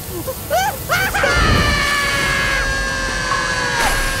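Cartoon voices letting out long, drawn-out screams of pain at the burn of a Carolina Reaper chip. They start about a second in, after a few short cries, and one scream breaks off just before the end. A low rumble sounds as the screaming begins.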